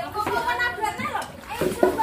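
Indistinct talking: a voice or voices speaking in short phrases that the recogniser did not catch.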